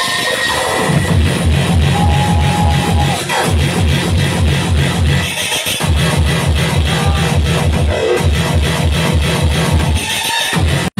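Hardcore (gabber) electronic dance music played loud over a club sound system, with a fast, heavy repeating kick drum that comes in about a second in.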